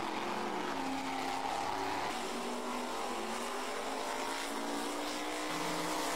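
Monster truck engines running hard at full throttle during a drag race off the line, a steady, sustained engine note.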